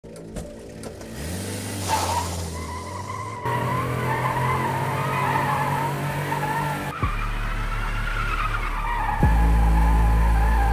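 Car sound effects: a steady low engine drone under a wavering, squealing tyre tone. The mix changes abruptly at edits about a third of the way in and near the middle, and the engine comes in louder near the end.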